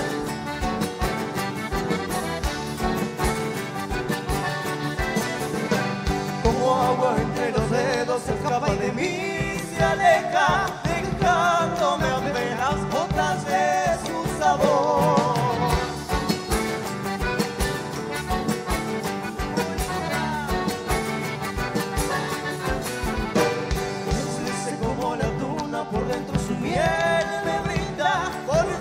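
Live chamamé band playing a song with a steady dance rhythm. Its melody bends in pitch and stands out most in the middle and again near the end.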